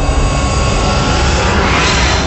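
Logo-animation sound effect: a loud, dense rumbling whoosh with a deep low end, swelling brighter near the end.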